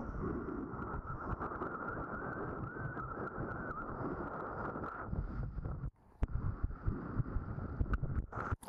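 Wind buffeting an action camera's microphone, with water rushing past as a kiteboard runs fast over choppy sea; the sound is muffled and steady. About six seconds in it cuts out for a moment, then comes back choppier as the board slows.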